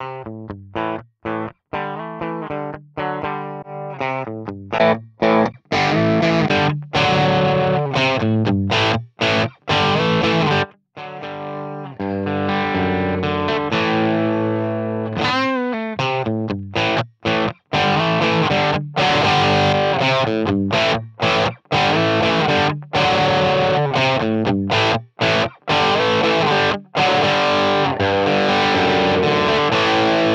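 Electric guitar played through a Line 6 POD Express amp-modelling pedal, with a distorted amp tone and effects. It plays short phrases broken by many brief silences while the preset is dialled in; the first few seconds are sparser notes before fuller playing.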